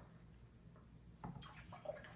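Faint pouring of white vinegar from a bottle into a glass coffee carafe holding water, starting about a second in after a couple of light clicks of the bottle being handled.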